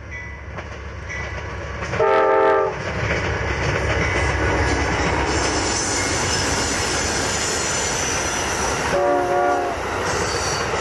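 Amtrak passenger train passing close by, its diesel locomotive's air horn giving two short blasts, one about two seconds in and another near the end. Between them the steady rumble of the locomotive and the passenger cars rolling past on the rails.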